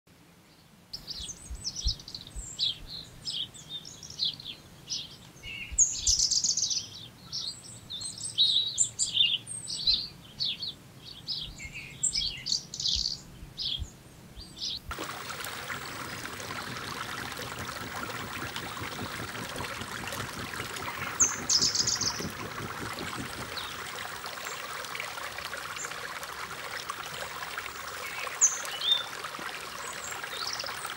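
Birds chirping and calling rapidly in quick, overlapping notes for the first half. About halfway a steady rush of flowing stream water abruptly takes over, with an occasional single bird call over it.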